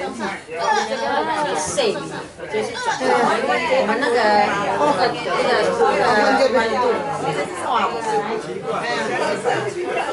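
Many people talking at once: a steady babble of overlapping conversation, with no single voice standing out.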